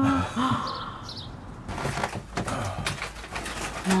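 A woman's voice trails off with a short falling 'oh' in the first half-second. From about a second and a half in come scattered knocks, bumps and rustles of two men gripping and shifting a tall potted cactus on a staircase, with faint voices behind.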